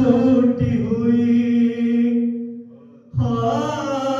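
Noha, an Urdu mourning lament, chanted by male voices in long, slowly bending held notes. The chant fades out and breaks off for a moment about three seconds in, then resumes.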